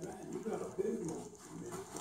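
People talking quietly in the background, the words not made out.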